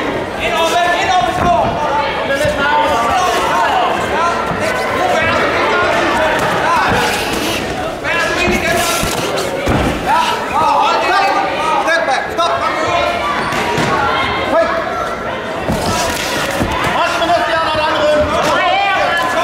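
Voices shouting continuously in an echoing sports hall, with scattered thuds of gloved punches and kicks landing during a kickboxing exchange, a cluster of them about halfway through and another near the end.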